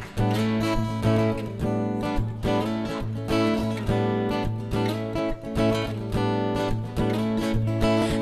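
Instrumental intro of a live French pop-rock song: acoustic guitar strumming chords in a steady rhythm over a bass guitar holding low notes.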